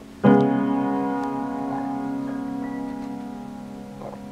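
Upright piano: a loud chord struck about a quarter second in and left to ring, fading slowly, with a few softer higher notes played over it.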